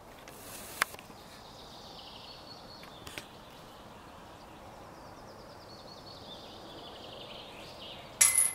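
Songbirds singing in the forest, repeated trilling songs over quiet outdoor ambience, with a couple of brief faint clicks.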